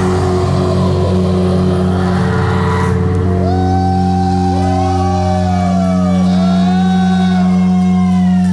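Live rock band's electric guitars holding a sustained chord, with drums and cymbals dying away about three seconds in; after that a lead guitar plays long notes that bend up and down over the ringing chord.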